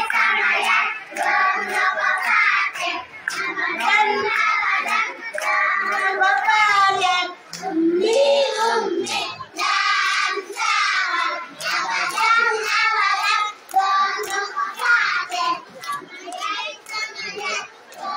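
Group of young children singing together, clapping their hands along in a steady beat.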